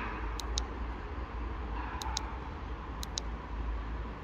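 Short clicks from the push buttons on an electric scooter's handlebar display being pressed, heard as three pairs of quick ticks about a second apart over a steady low rumble.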